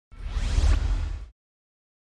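Whoosh sound effect for an intro logo reveal: a noisy sweep with a deep rumble underneath, rising in pitch over about a second and then cutting off.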